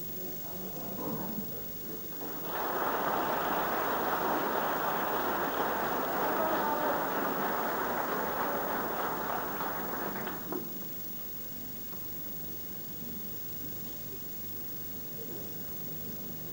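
Audience applauding in the arena, starting a couple of seconds in, lasting about eight seconds and then stopping fairly suddenly. Only a low room murmur follows.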